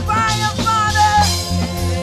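Live worship band playing: electric bass, keyboard and drum kit with a steady beat, and a singer's voice over them through the first part.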